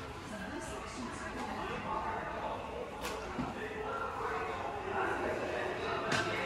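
Indistinct background voices of people talking, with a single sharp click about three seconds in.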